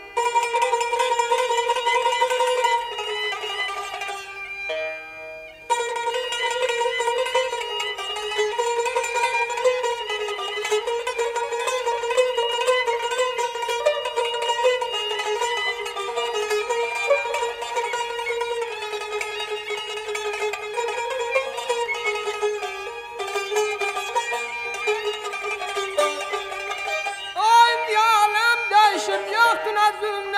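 Instrumental passage of an Azerbaijani segah mugham piece led by a plucked string instrument playing an ornamented melody, with no voice. The music dips briefly about four to six seconds in, then carries on.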